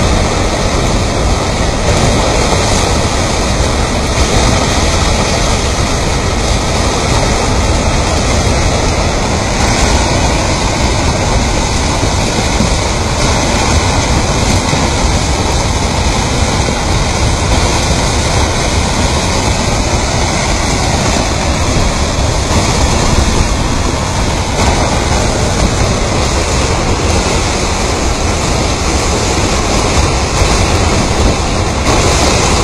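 Debris flow of mud and stones moving down a gully: a loud, steady rushing rumble of rocks grinding and tumbling in the slurry.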